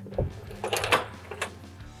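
A few short metallic clicks and rattles of a safety carabiner being unhooked from the camper's roof-lift bar, over faint background music.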